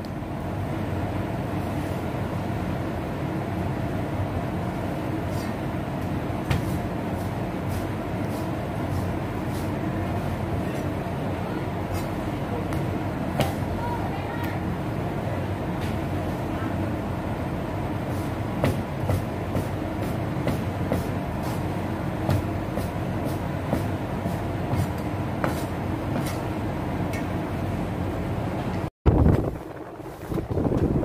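A chef's knife slicing raw chicken breast on a plastic cutting board, with irregular light taps of the blade against the board, over a steady machine hum throughout.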